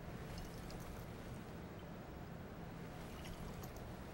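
Faint sloshing of water in a capped glass volumetric flask being inverted and shaken to mix the solution, with a few light clicks of glass handling, over a steady low hum.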